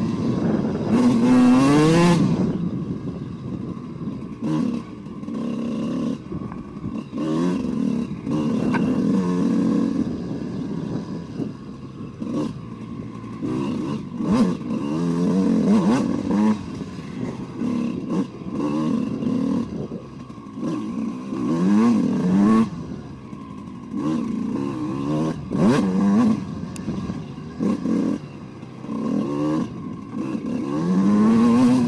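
Two-stroke single-cylinder engine of a 2002 Suzuki RM125 fitted with an Eric Gorr 144 big-bore kit, ridden hard: the throttle is opened and closed many times, the exhaust note rising in pitch with each burst and dropping between. Knocks and clatter from the bike over the rough trail come in between.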